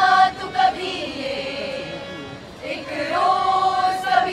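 A group of young women singing together in unison, with long held notes near the middle and the end.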